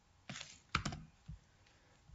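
A few keystrokes on a computer keyboard: short, separate clicks in the first second and a half.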